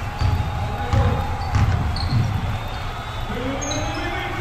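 Basketball dribbled on a hardwood gym floor: four bounces about 0.6 s apart in the first two and a half seconds.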